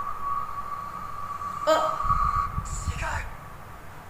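Anime soundtrack sound effects: a steady high tone held for about three seconds, a sharp hit partway through, and a low rumble near the end, with a brief voice.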